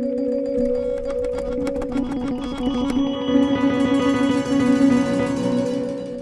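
Several software instrument parts in Ableton Live playing the same trill on B, started one after another and overlapping into a steady, sustained trilling texture in two octaves.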